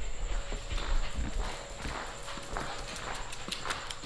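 A dog's claws clicking on a tile floor in irregular light taps that come quicker near the end, with some low rumble of camera handling in the first second.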